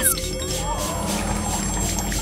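A plastic trigger spray bottle misting, heard as a short hiss at the very start, over steady background music.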